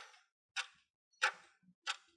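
Stopwatch ticking sound effect: four sharp, evenly spaced ticks, a little over half a second apart, a timer counting off the thinking time for a quiz question.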